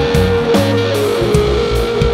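Rock band playing live in an instrumental passage without vocals: electric guitar over bass guitar and a drum kit.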